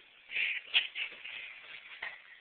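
Soft rustling and shuffling noises in a few short bursts, the sharpest about a second in.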